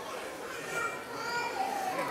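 Background chatter: several voices talking at once, none of them clear.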